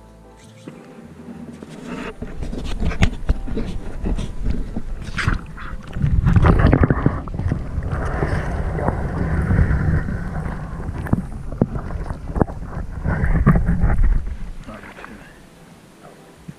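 Muffled underwater noise from an action camera dipped into shallow lake water: sloshing, knocks and clicks over a heavy low rumble that builds after a couple of seconds and falls away near the end.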